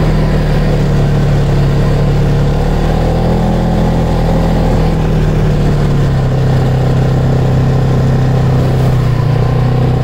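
Polaris Sportsman 570 ATV's single-cylinder engine running steadily under way. Its pitch eases down a little about six seconds in and picks up again near the end.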